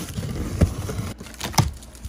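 Large cardboard shipping box being opened by hand: the flaps scrape and rustle, with two sharp thumps, one about half a second in and one past a second and a half.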